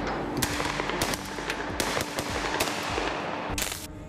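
Assault rifles fired into the air: irregular single shots, several a second, then a short continuous burst of automatic fire near the end.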